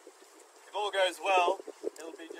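A person's voice saying a short word or two about a second in, over light wind noise on the microphone.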